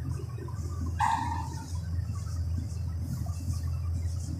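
A marker writing on a whiteboard, with faint scratchy strokes, over a steady low electrical hum. About a second in there is one short, high squeak that falls slightly in pitch.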